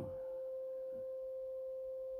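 A steady electronic tone sounding the note C, one pure pitch with a faint overtone an octave above, held without change.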